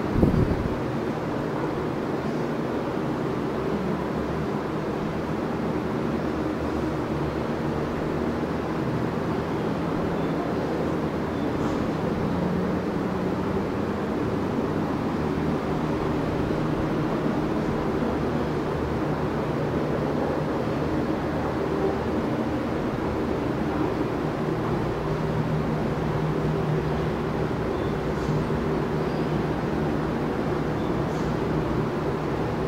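Box fan running: a steady rush of air with a low hum that wavers slightly in pitch. A brief knock right at the start is the loudest sound.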